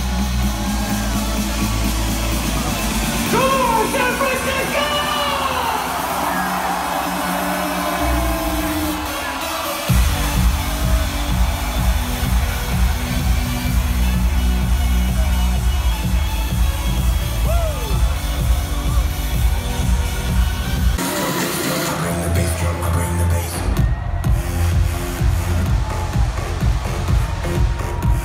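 Electronic dance music from a DJ set played loud over an arena sound system, heard from within the crowd. A build-up gives way to a heavy pounding bass beat about ten seconds in, which breaks off briefly near the end and comes back, with crowd voices cheering over the music.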